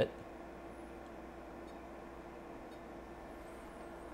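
Quiet, steady hum and hiss of room tone, with a faint steady tone underneath.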